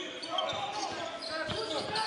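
A basketball being dribbled on a hardwood court, with short bounce knocks, amid the echoing hall noise of players' shoes and voices in the arena.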